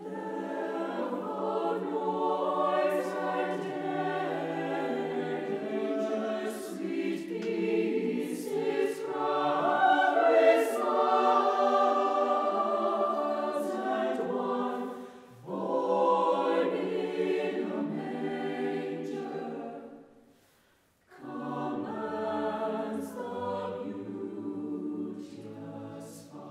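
Mixed choir of men's and women's voices singing unaccompanied, a cappella, in long phrases, with a brief break about halfway through and a full stop of about a second near three-quarters through before the voices come back in.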